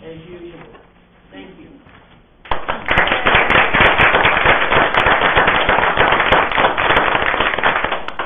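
A roomful of people applauding, the clapping breaking out suddenly about two and a half seconds in and going on steadily.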